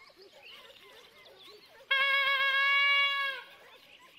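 A hunting horn sounds one long steady blast, about a second and a half, dipping slightly in pitch as it ends. It follows a few faint, distant calls.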